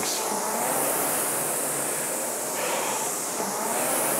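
Concept2 indoor rower's air-resistance flywheel whirring steadily under continuous rowing, the whoosh swelling slightly with each drive.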